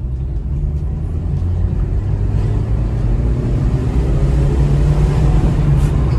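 Maruti Suzuki Dzire's engine accelerating hard, heard from inside the cabin, its drone rising steadily in pitch and loudness.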